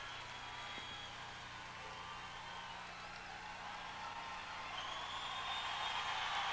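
Audience applause in a hall, low at first and swelling over the last second or so, with a steady low electrical hum underneath.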